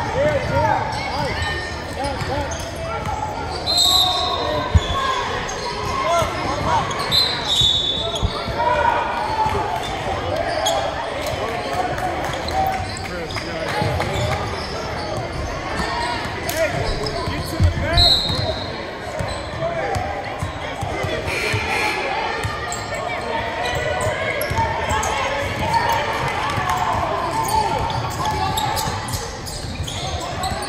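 Basketball game play on a hardwood gym floor: a ball bouncing in scattered knocks, a few short high squeaks, and continuous voices of players and spectators echoing in the large hall.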